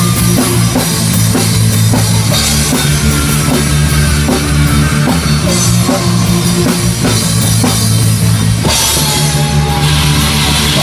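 Live rock band playing an instrumental passage: a drum kit keeping a steady beat, with cymbal crashes every few seconds, over sustained keyboard and guitar chords.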